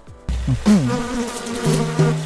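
Cartoon transition sound effects: a low thud, then a buzzing tone that bends up and down in pitch and settles into a steady buzz near the end.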